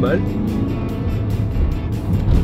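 Audi A1 hatchback heard from inside the cabin while driving: steady low engine and road rumble, under background music.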